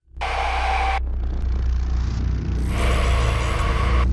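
Trailer sound design: a deep, low rumbling drone starts suddenly and holds steady. A short burst of noise comes in the first second, and a second noisy swell rises about three seconds in.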